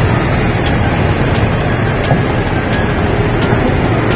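Steady low rumble of vehicle traffic and engines, with music playing in the background.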